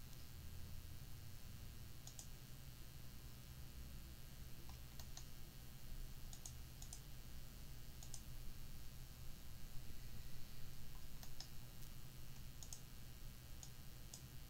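Computer mouse clicking: about ten single clicks at irregular intervals, over a faint steady low hum.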